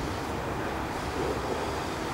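Steady wind noise on the microphone, a low rumbling hiss with no distinct events.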